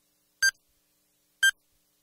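Two short electronic beeps, one second apart, with silence between them: a beep sound effect edited over a black frame.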